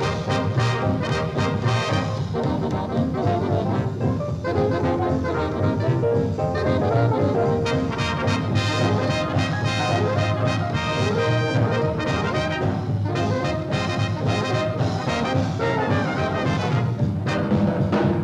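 A swing big band playing an instrumental number: saxophones and brass over a drum kit.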